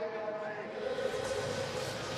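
Broadcast transition sting under the league-logo wipe: a few held steady tones over a whooshing hiss that builds toward the end.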